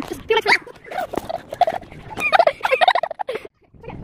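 A girl laughing in short, broken, repeated bursts while swinging, cut off suddenly about three and a half seconds in.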